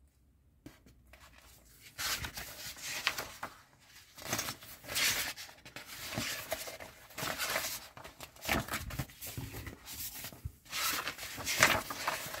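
Glossy paper magazine being handled and its pages turned: irregular rustling and crinkling of paper that starts about two seconds in.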